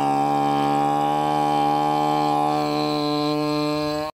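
A man's voice holding one long sung note at a steady pitch, chanted rather than spoken.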